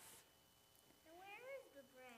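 Near silence, broken about a second in by one faint, brief high-pitched vocal sound from a child that rises and then falls in pitch.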